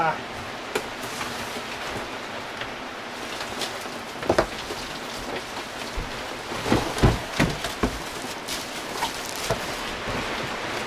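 A cardboard guitar box and its plastic wrapping being handled during unpacking: scattered knocks, thumps and rustles, a cluster about four seconds in and another around seven seconds in, over a steady background hiss.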